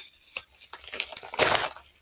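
A padded paper mailer torn open by hand: crinkling and ripping of the paper, with the loudest tear about one and a half seconds in.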